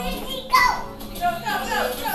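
A toddler's high-pitched excited voice, a few short falling cries in quick succession from about half a second in, over background music.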